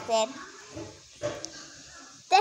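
A child's voice finishing a word, then quiet room noise with one brief soft rustle-like sound a little past a second in.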